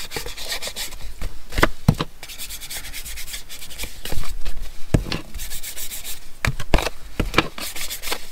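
Foam ink blending tool scrubbed over the edges of paper cards to ink and age them: a scratchy rubbing in repeated strokes, with several sharp knocks along the way.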